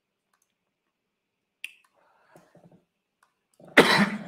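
A single sharp click, typical of a computer mouse, about one and a half seconds in. Near the end comes a loud, sudden cough from a man with his hand over his mouth.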